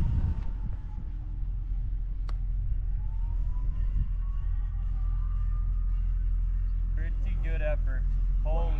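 Putter striking a golf ball: one sharp click about two seconds in, over a steady low rumble of wind on the microphone. A faint thin tone rises and falls in the background partway through.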